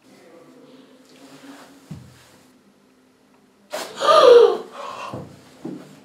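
A loud cry of pain about four seconds in, set off by a short sharp noise, as wax is pulled from the skin, followed by quieter gasping sounds.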